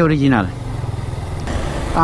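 Motorcycle engine running with a steady low rumble, heard once a voice stops about half a second in.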